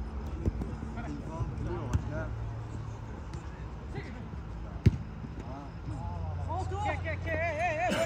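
A football being kicked on an artificial-turf pitch: a few sharp strikes, the loudest a little before the middle. Players' voices call out around them, with a long wavering shout near the end.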